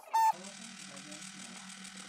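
Bellcida EMS Face Line face-lift device switching to its vibration mode: a short tone, then its vibration motor buzzing steadily at a low pitch against the face.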